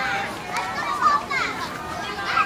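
A group of young children chattering and calling out together, many high voices overlapping at once.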